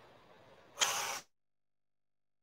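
A single short, hissing breath out, about half a second long, near the middle, from a woman straining in a hollow-body core hold; after it the sound cuts to complete silence.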